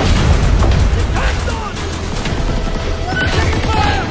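Dramatic trailer music mixed with rapid gunfire and booms.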